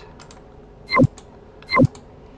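Two loud, sharp clicks about a second in and near the end, with a few faint taps between, from a computer keyboard and mouse as a command is pasted into a terminal and confirmed.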